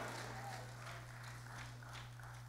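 A pause in a church sanctuary: the echo of a man's preaching voice dies away over about half a second, leaving a faint steady low hum and a few faint scattered room sounds.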